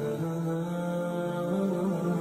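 Background vocal music: a single voice chanting long held notes that shift slowly in pitch, with no street noise beneath it.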